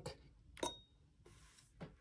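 Two faint, sharp clicks about a second apart from a plastic button on a Boogie Board Blackboard LCD writing tablet being pressed, stepping through its exact-erase calibration settings.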